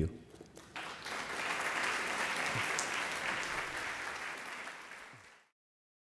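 Audience applauding, swelling up about a second in, then thinning out and cut off abruptly near the end.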